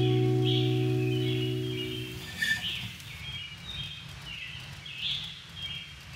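Birds chirping over faint outdoor background noise, while an acoustic guitar chord rings and dies away in the first two seconds.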